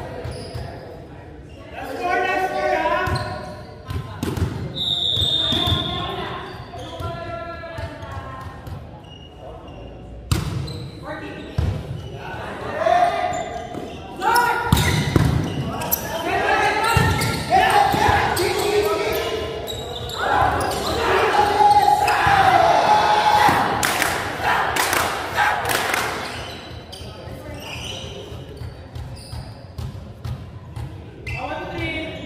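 Volleyball rally in a large gym with echoing sound: sharp slaps and knocks of the ball being hit and bouncing on the hardwood floor, mixed with players shouting calls to each other, loudest in the second half.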